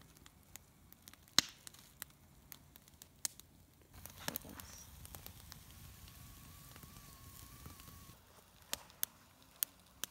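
Wood campfire crackling in a fire pit, with scattered sharp pops, the loudest about a second and a half in.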